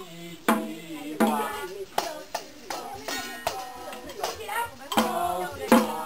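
Small hand percussion instruments struck by hand at irregular intervals, roughly once or twice a second, as a voice sings along.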